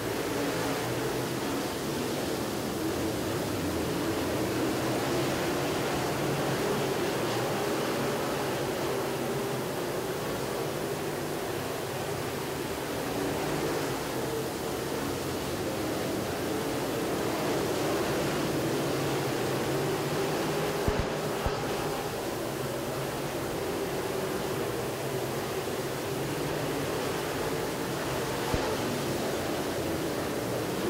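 A field of dirt late model race cars circling the track at a slow pace under caution: a steady, blended drone of engines with no single car standing out. A few brief sharp knocks come in the second half.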